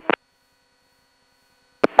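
Near silence in a gap between radio calls. Only a faint steady electronic tone is left on the channel, with the tail of one transmission at the very start and the next beginning shortly before the end.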